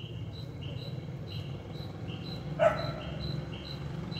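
A dog barks once, short and sharp, about two-thirds of the way in. Under it, insects chirp steadily in an even, repeating rhythm over a low background hum.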